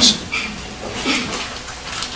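Pause in a man's lecture: a short breath-like hiss and faint mouth sounds over quiet room tone.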